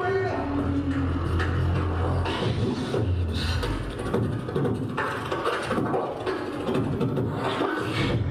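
Human beatboxing amplified through a handheld microphone: a deep held bass tone over the first couple of seconds, then quick rhythmic clicks and snare and hi-hat sounds made with the mouth.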